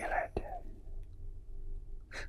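A man's voice trailing off on the last syllable of a sentence, followed by a pause that holds only a faint steady low hum of room tone.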